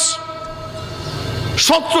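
Steady ringing tones from the amplified public-address system hang through a pause in the talk. A man's amplified voice comes back in near the end.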